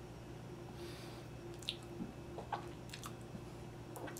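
Faint chewing of a soft chocolate-filled mini croissant: a few scattered wet mouth clicks over a low steady hum.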